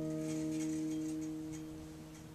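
An acoustic guitar's last chord ringing out, its notes slowly fading away.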